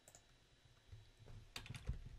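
Faint computer keyboard keystrokes, a few scattered taps and then a quick cluster of several about a second and a half in.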